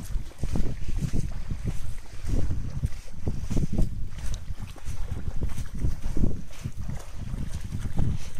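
Wind buffeting the microphone: an uneven low rumble that rises and falls in gusts every second or so.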